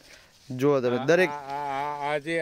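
A man's voice: about half a second in, one long drawn-out vocal sound at a steady pitch, held for about a second and a half.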